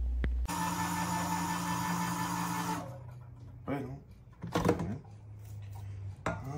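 A small electric motor runs steadily for about two seconds and then cuts off suddenly. A few short bits of speech follow.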